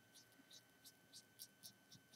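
Near silence: room tone with a faint steady high-pitched hum and a few very faint soft ticks.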